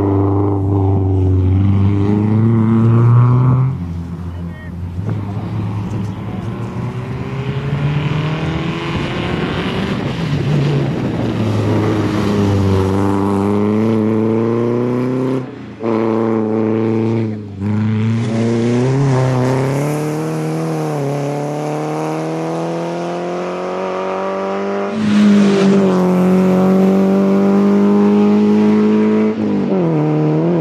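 Renault Clio Sport rally car's four-cylinder petrol engine revving hard as it drives the stage, its pitch climbing and falling again and again with gear changes. Twice in the middle it briefly lifts off the throttle, and a louder run of revs starts late on.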